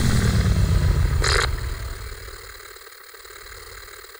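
Logo sting sound effect: a deep boom that falls in pitch as it fades away, with a short glitchy burst about a second in.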